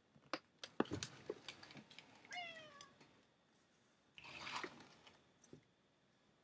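A house cat meows once, a short call falling slightly in pitch, about two seconds in. Around it are a run of sharp clicks and knocks early on and a brief burst of rustling about four seconds in.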